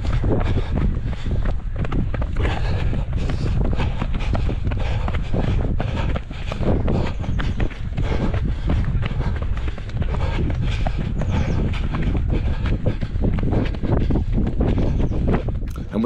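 Running footsteps on a dirt trail, a rapid run of short thuds, under steady wind rumble on the microphone of a camera carried at running pace.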